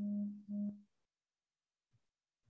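Two short, low electronic beeps in quick succession, the first slightly longer than the second.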